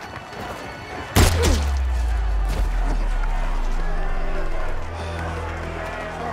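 A sudden loud impact about a second in, then a deep, held bass tone from the dramatic film score that dips slightly near the end.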